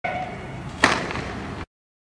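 A single sharp bang a little under a second in, like a riot-police tear-gas round being fired, over steady street noise; the sound then cuts off abruptly to dead silence.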